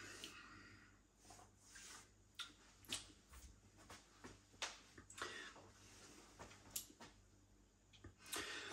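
Near silence with faint mouth sounds of someone tasting beer: soft lip smacks and clicks, swallowing and breathing through the nose.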